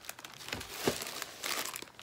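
Crinkly packaging being handled while items are lifted out of a subscription box, crinkling on and off with a few sharper crackles.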